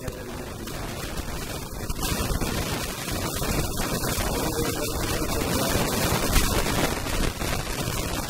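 Loud, continuous crackling static in the recording, with a man's talking faint beneath it.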